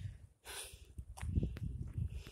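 A person breathing hard from the effort of walking up a steep hill, with one heavy breath about half a second in, followed by a run of footsteps and low thuds.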